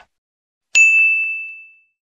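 A single bright ding starts sharply about three-quarters of a second in and rings on, fading out over about a second. It is the notification-bell sound effect of a subscribe-button animation.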